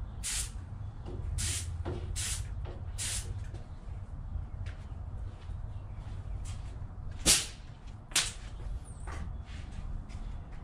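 Paint being sprayed onto an engine block in short hissing bursts, about four in the first three seconds and a few fainter ones later. Two sharp knocks about a second apart come near the end.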